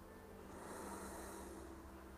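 A single soft breath, about a second long, from a person holding a low lunge, faint over a low steady hum.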